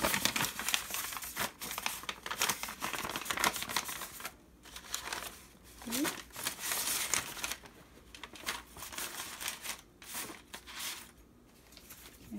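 Stiff, dried dyed paper crinkling as it is handled and folded. The crackling comes in bursts, heaviest in the first four seconds, with shorter bursts later.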